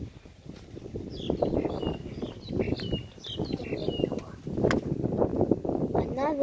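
Birds chirping in a run of short, high calls, over uneven rumbling wind noise on the phone's microphone, with one sharp click near the end.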